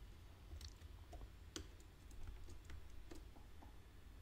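Faint, irregular clicks of a computer mouse and keyboard, about ten over the few seconds, as a diagram is copied and pasted.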